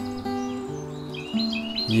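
Soft background music with long held notes, and a bird chirping a quick run of short, high notes about a second in.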